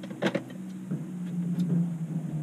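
A boat motor running steadily with a low hum, and a short clatter of knocks from handling on the boat about a quarter second in.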